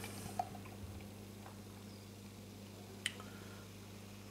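Dark ale being poured from a bottle into a glass: a faint, steady liquid pour. There is a short click about three seconds in.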